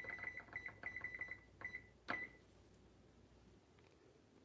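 Electronic oven control panel beeping as the timer is set: a rapid run of short, even beeps, about six a second, for about a second and a half, then a longer beep and a final beep with a click about two seconds in.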